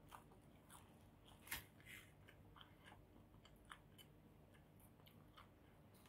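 Faint chewing of a mouthful of pizza: scattered soft mouth clicks and smacks at irregular intervals, the loudest about a second and a half in.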